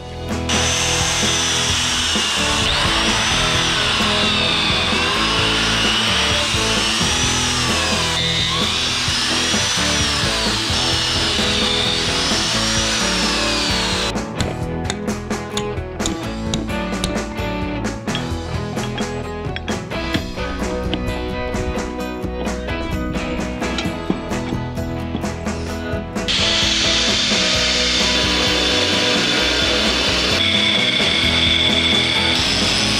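Tool work on timber over background music, with a pitch that rises and falls every couple of seconds and then a long run of rapid clicks and knocks. About four seconds before the end, the steady high whine of an angle grinder starts and keeps running.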